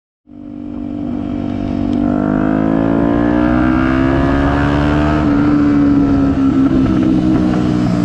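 Motorcycle engine heard from the rider's position, fading in over the first couple of seconds, then rising gradually in pitch as the bike accelerates and holding a steady drone at cruising speed.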